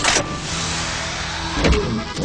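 Cartoon machinery sound effect: a steady mechanical whir of a floor hatch and car lift being worked from a lever console, starting suddenly, with a low thump about one and a half seconds in.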